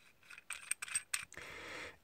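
Small metal clicks and scrapes as the threaded aluminium front housing of an LED light arm is screwed back on by hand, ending in a steady scraping rub of about half a second near the end.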